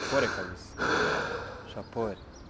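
A man sobbing: a short choked sob at the start, then a longer, shaky crying breath about a second in, and a brief catch of breath near the end.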